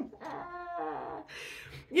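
A woman's drawn-out, whining laugh falling in pitch, followed by a breathy exhale.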